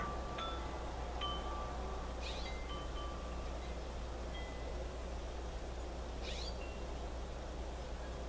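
Chimes ringing a few scattered, bell-like notes at irregular moments, over a steady low hum and hiss. Two faint soft swishes come about two and six seconds in.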